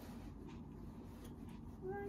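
A cat begins a long, drawn-out meow near the end, over faint handling sounds.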